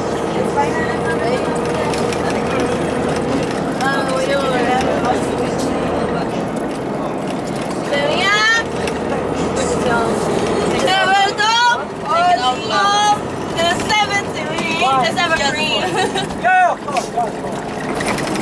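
Steady engine and road noise inside a moving coach bus. From about halfway, passengers' high, gliding voices break in over it.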